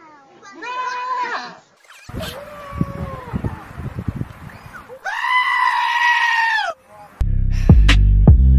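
Goats screaming: a short bleat about a second in, then, after a rougher, noisier stretch with a lower falling call, a long, loud, human-like scream held for nearly two seconds. Loud electronic music with heavy bass starts near the end.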